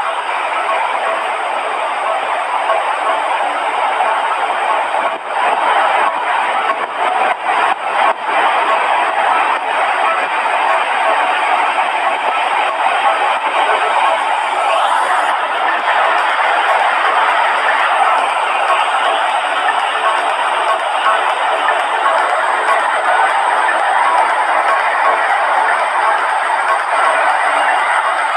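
Rough sea surf breaking and washing up a sandy beach: a loud, steady rushing noise.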